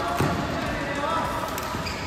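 Indoor badminton play: one sharp knock about a quarter of a second in, with indistinct voices in the hall.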